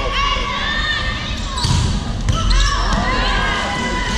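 Echoing gym sounds of a volleyball rally: players calling out and shoes squeaking on the court, with a couple of dull thuds of the ball around the middle.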